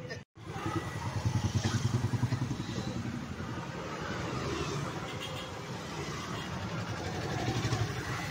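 Motor scooter engine running as it passes close by, over people's chatter. The sound cuts out for a moment just after the start.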